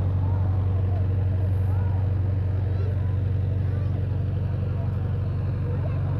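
A steady, low engine drone running evenly, with faint voices in the background.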